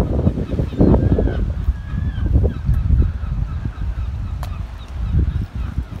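Gusty wind buffeting the microphone with an uneven low rumble. Waterbirds call faintly several times, mostly in the first half.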